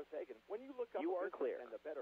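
Faint speech in a radio broadcast, too quiet for words to be made out.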